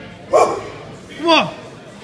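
Two short, loud male shouts of encouragement to a lifter approaching the squat bar, about a second apart, the second sliding down in pitch.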